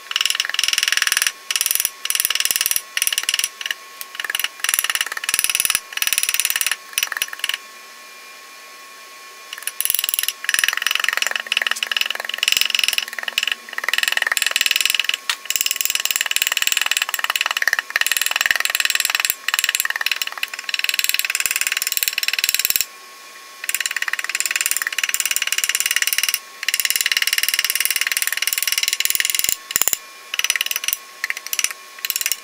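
Rapid light taps of a small ball-peen hammer on gasket paper laid over a metal engine part, cutting the gasket out by beating the paper through against the metal's edges. The taps run in quick bursts, pausing briefly about eight seconds in and again past twenty seconds.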